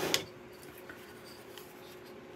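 Faint handling of hard plastic fan parts, a light rubbing as the clip bracket is fitted to the back of a small fan, with one sharp click right at the start.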